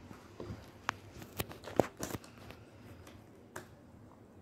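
Plastic interlocking toy bricks clicking and knocking as pieces are handled and pressed together: about half a dozen short sharp clicks, the loudest a little under two seconds in.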